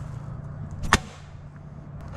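A thrown knife striking an aluminium drink can and sticking into a wooden log: one sharp impact about a second in, over a steady low hum.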